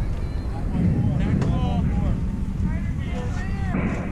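Softball players' high voices calling out and chattering across the field in short bursts, over a steady low rumble of wind on the microphone.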